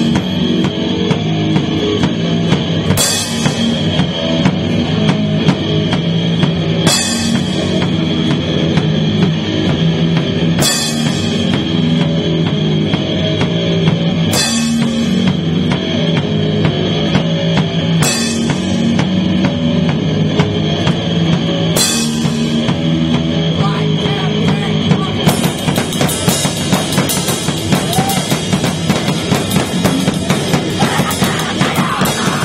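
Punk rock band playing live without vocals: drum kit under a steady wall of amplified guitar, with a crash cymbal struck about every four seconds. In the last few seconds the drumming gets busier, with rapid cymbal strokes.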